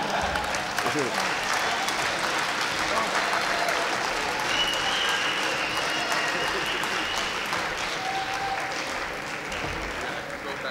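Audience applauding: steady, dense clapping that eases off slightly near the end.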